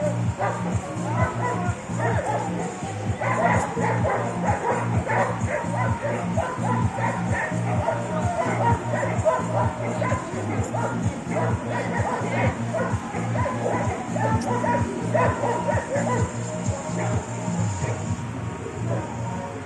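Dogs barking and yipping again and again, densest from about three seconds in, over loud music with a steady low beat.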